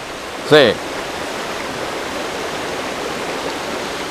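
Shallow river running over rocks and stones: a steady rushing of water.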